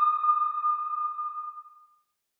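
A single bright electronic ping from the channel's logo sting: one high tone struck just before, ringing on and fading out near the end.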